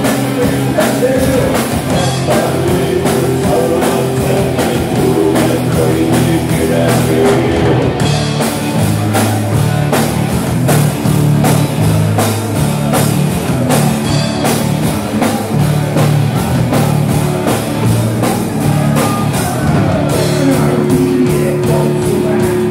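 Live rock band playing loud: electric guitars, bass and drum kit, with a singer's vocals.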